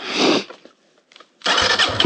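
A short rush of noise, then a pause with a few faint clicks, then a Kawasaki KLX dirt bike's single-cylinder four-stroke engine catching about one and a half seconds in and running. It is a restart after the bike stalled following a water crossing and would not start.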